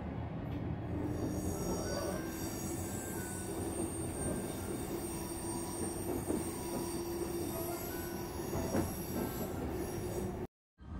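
Kintetsu Blue Symphony electric train running, heard from inside a passenger car: a steady rumble from the wheels and running gear with a steady hum that sets in about a second in, and a couple of faint knocks near the end.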